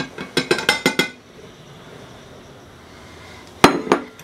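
An orange glazed bowl clinks against the rim of a glass Pyrex measuring cup several times in the first second as flour is tipped out of it. One loud, sharp knock with a short ring follows near the end.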